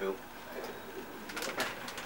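A male voice says "two" to end a countdown, then quiet studio room sound with a few faint sharp clicks in the second half.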